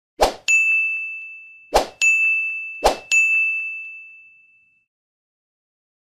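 Subscribe-button animation sound effects: three short pops, each followed by a bright notification ding that rings and fades. The last ding dies away about two seconds after it.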